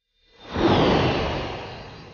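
Fantasy magic whoosh sound effect as glowing spell writing appears: a rushing swell with a shimmering high ring that sinks slightly, starting a moment in and then fading away slowly.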